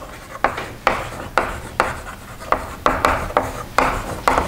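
Chalk writing on a blackboard: about nine short strokes, each starting with a sharp tap and trailing into a brief scrape, roughly two a second.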